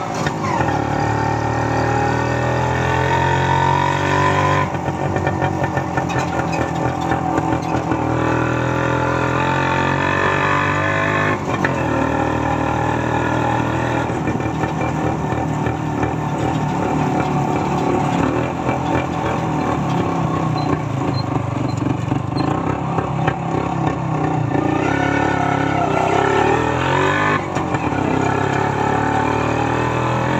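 Kawasaki HD3 two-stroke motorcycle engine pulling a tricycle sidecar, heard from the sidecar while riding. Its pitch rises as it accelerates through a gear, then drops at each upshift, several times over, with road noise underneath.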